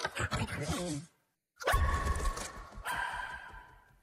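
Cartoon puppy vocal sound effects: a quick run of short grunting noises, a brief silence, then two longer held cries that each fade away.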